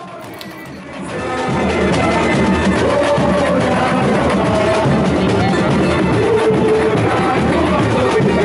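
Samba school drum section (bateria) playing: surdo bass drums and other percussion in a dense, steady beat, with a sung melody over it. It swells louder about a second in.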